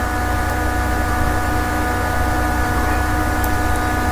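Steady electrical hum and hiss from the recording setup: a low drone with several fixed steady tones above it that do not change.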